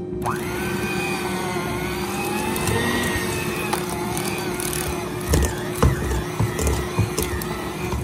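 Electric hand mixer running in a stainless steel bowl with a steady, slightly wavering whine, its beaters churning a stiff dough of melted mozzarella and almond flour that balls up around them. Several low knocks come in the second half as the dough clump thuds around the bowl.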